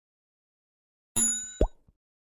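Sound effects of a subscribe-button animation: silence, then about a second in a bright, bell-like notification ding that rings and fades, with a short rising pop just after it.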